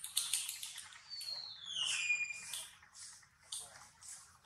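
Baby macaque crying: short high squeaks, then one long high-pitched cry about a second in that slides down in pitch.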